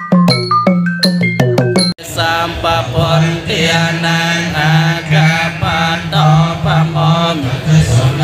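A quick run of struck, bell-like notes that cuts off suddenly about two seconds in. Then Theravada Buddhist monks chant Pali in unison, many voices held on a near-steady low reciting pitch.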